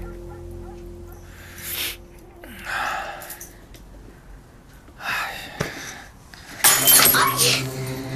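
Glass breaking about seven seconds in, a sudden crash with a high ringing tail. Before it come a few soft rustling, breathy sounds and a sharp click, while a quiet background music tone fades out early.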